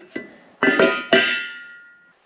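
A few piano notes struck in quick succession, the last one ringing and fading away.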